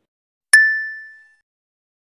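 A single ding sound effect, struck once about half a second in and ringing out with a clear tone that fades over most of a second. It marks the transition to the next quiz question.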